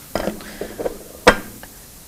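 Light knocks of plastic blender parts being handled, then one sharp clack about a second in as a plate is set down on the countertop.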